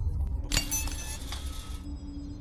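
A sudden crash of shattering glass about half a second in, with a high ringing tinkle and a second clink a second later. It cuts off abruptly near the end, over a low, steady musical drone.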